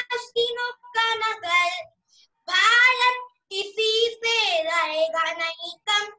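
A child singing a patriotic song solo and unaccompanied over a video call, in short sung phrases with brief silent pauses between them.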